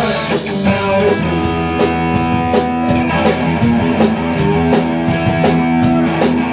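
Live rock band playing an instrumental passage: a drum kit keeps a steady beat of regular drum and cymbal hits under sustained electric guitar chords.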